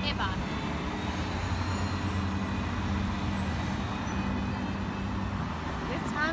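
Road traffic at a street intersection: the steady low hum of car engines as vehicles drive past.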